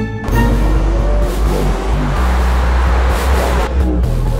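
A short musical sting cuts off just after the start, giving way to loud, dense city transport noise with a heavy low rumble, like a metro station with trains running.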